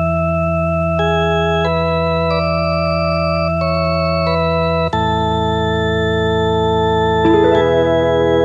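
Electronic organ playing the slow intro of a song: held chords under a simple melody that moves note by note, with a change of chord about five seconds in.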